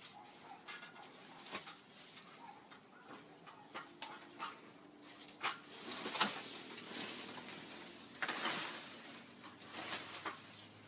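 Leaves and vines rustling as they are pulled away from a tree trunk by hand, with scattered sharp snaps of twigs and a longer rustle a little after eight seconds in.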